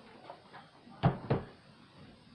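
Two quick knocks, a quarter second apart, from boxed action figures in cardboard-and-plastic packaging being handled and set down on a surface.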